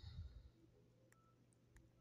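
Near silence: faint room tone, with a brief soft rustle at the start and a few faint clicks.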